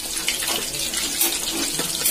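Fish sizzling as it fries in hot oil in a steel pan: a steady hiss with small crackles and pops.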